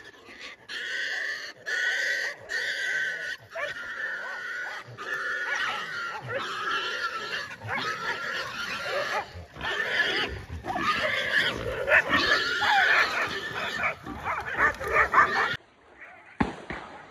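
A wild boar squealing while a pack of hunting dogs barks and yaps at it as they hold it at bay. It opens with a series of long, high squeals, then the squealing and barking run together in a continuous din that cuts off shortly before the end.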